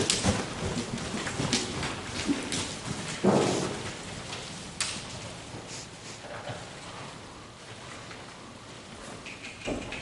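A horse walking and turning on the forehand on soft arena footing: scattered soft hoof falls and tack clicks over a steady hiss, with one louder burst about three seconds in.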